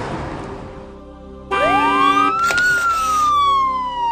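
Game-show sound effect: a rush of noise fades out, then about a second and a half in a siren-like tone sweeps up and slides slowly down over a held electronic chord. It is the penalty sting for landing on the 'Saher' speed-camera tile, which means the caller has lost.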